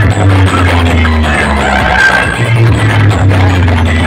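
Very loud music with a heavy, steady bass line, played through a large DJ speaker stack.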